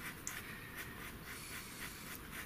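Pastel pencil stroking across textured pastel paper: faint, soft scratching in short repeated strokes as grey is laid over a lighter tone.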